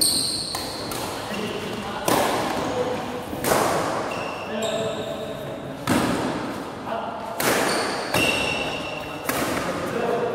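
Badminton rally: rackets striking the shuttlecock about six times, every one and a half to two seconds, each hit ringing out in the large hall, with short high squeaks of shoes on the court floor between the hits.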